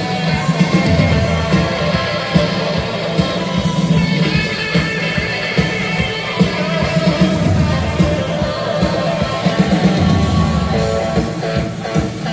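Live rock band playing, with electric guitar over a steady drum beat.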